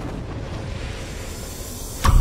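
Cinematic logo-intro sound effect: a deep rumble under a hiss that swells toward the end, building up like a riser.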